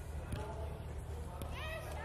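Footballs kicked on a pitch: a couple of dull knocks, then a child's high-pitched call near the end, over a steady low rumble.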